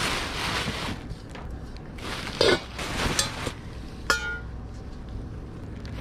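Tissue paper rustling and crinkling as silver-plated tableware is unwrapped from a cardboard box. About four seconds in there is a single sharp metallic clink with a short ring.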